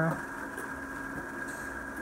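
A steady machine hum with a faint high whine running under it.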